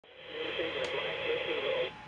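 A thin, radio-like voice from the TV speaker, with no low end and no highs, that cuts off suddenly just before two seconds in.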